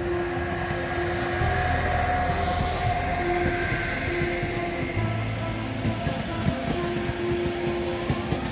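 Electric-hauled passenger train running past close by: a steady rolling rumble of the coaches, with frequent clicks from the wheels over the rails, busiest in the second half. Background music with held notes and a bass line plays over it.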